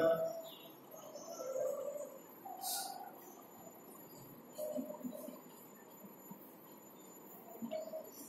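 Chalk on a blackboard: faint, scattered scratches and taps as a ring structure and letters are drawn.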